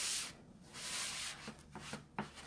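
Paper towel rubbed briskly over a silk-screen stencil laid on a terry cloth towel, blotting the screen dry: a few dry, hissing wiping strokes.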